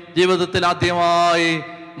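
A man's voice through a microphone, intoning two drawn-out phrases in a chant-like preaching cadence, the second held long on an even pitch.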